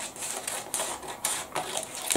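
Scissors cutting along the edge of a translucent paper dress pattern, with repeated snips, several a second.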